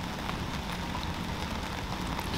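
Steady rain falling, an even hiss with scattered faint drop ticks.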